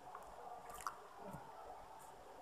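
Faint room noise with a single soft click a little under a second in.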